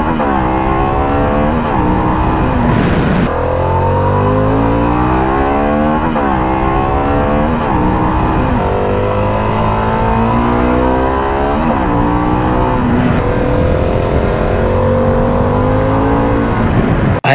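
Harley-Davidson Pan America 1250 Special's Revolution Max 1250 V-twin being ridden hard, its pitch climbing as it revs and dropping back again and again.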